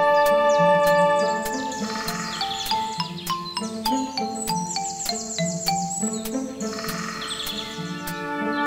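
Instrumental music of held Mellotron chords over a stepping bass line, layered with woodland birdsong. The birdsong has runs of quick chirps in the middle, and a light click recurs about every half second.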